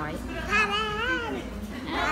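A toddler's drawn-out, high-pitched wavering vocal sound, about a second long, rising and then falling in pitch.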